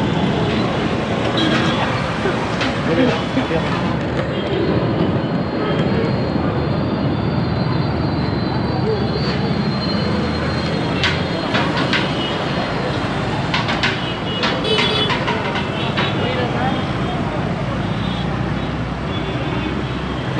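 Steady noise of busy street traffic: motorbike and car engines running in slow, congested traffic, with people's voices mixed in.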